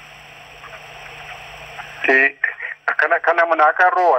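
A steady hiss with a faint low hum for about two seconds, then a man starts speaking over a narrow, telephone-quality line.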